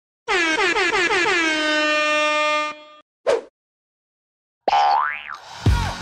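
Intro sound effects: a horn-like boing tone that wobbles down in pitch several times and then holds steady for about two seconds, a short swish, then a tone that glides up and falls back. Music with a steady beat comes in near the end.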